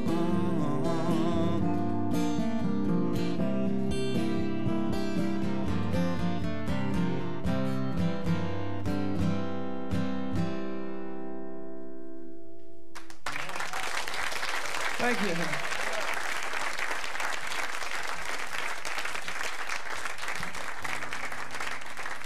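A guitar plays the last chords of a song, which ring out and fade away. About thirteen seconds in, audience applause starts suddenly and continues.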